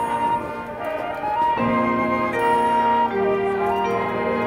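Marching band playing held brass and woodwind chords, softer at first, then a fuller entry of new notes about one and a half seconds in.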